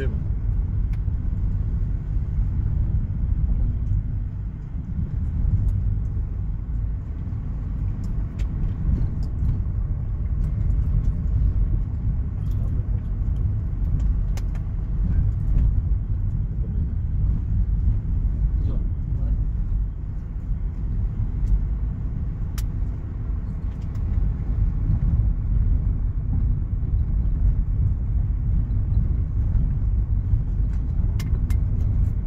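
Steady low road rumble inside a moving car's cabin: tyre and engine noise with the windows closed.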